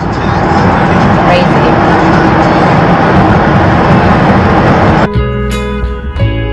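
Loud, steady road and tyre noise heard from inside a car driving through a road tunnel. About five seconds in it cuts off abruptly and a guitar music track starts.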